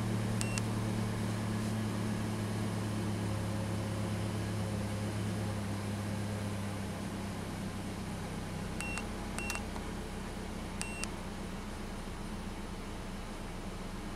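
Short electronic key-press beeps from a handheld OBD2 scan tool as its menus are stepped through: one just after the start and three more close together later on. Under them a vehicle engine idles with a steady low hum that eases a little about halfway through.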